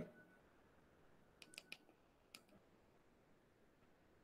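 Near silence: room tone with a few faint clicks about one and a half to two and a half seconds in.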